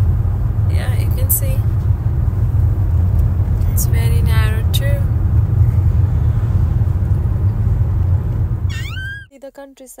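Steady low rumble of road and engine noise inside a car cabin at highway speed. It cuts off abruptly about nine seconds in.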